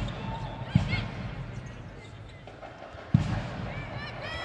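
A basketball bounced on a hardwood court: two separate bounces, one just under a second in and one just after three seconds in, over steady arena background noise. There are faint short squeaks about a second in.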